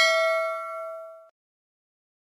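Notification-bell ding sound effect from a subscribe-button animation: one bright metallic chime that rings, fades and then cuts off suddenly about a second and a half in.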